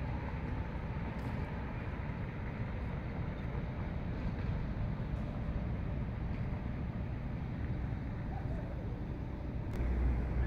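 Steady low outdoor rumble of city ambience at night, the kind made by distant traffic.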